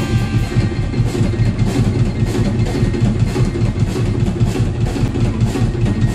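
Live band playing an instrumental: the drum kit keeps a steady beat of about four strokes a second over a bass line, with electric guitar playing along.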